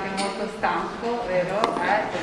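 Speech: a voice talking, with two brief sharp clicks, one just after the start and one near the end.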